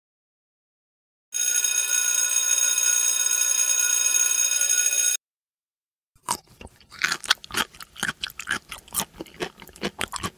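A steady ringing tone lasting about four seconds, which cuts off suddenly. About a second later, kittens start crunching dry cat food from a bowl: a quick, uneven run of crunches.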